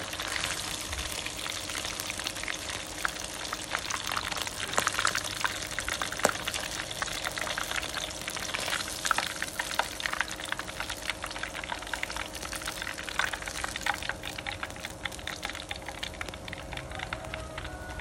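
Batter-coated salmon belly pieces deep-frying in hot oil: a steady sizzle dense with fine crackles and a few louder pops and clicks, easing slightly near the end as the pieces are lifted out.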